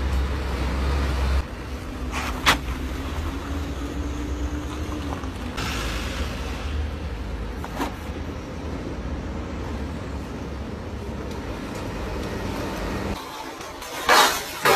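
Cars driving through a deep water-filled pothole in a street: steady engine and tyre noise, with two sharp knocks as wheels drop into and hit the hole, and a rush of splashing water in the middle.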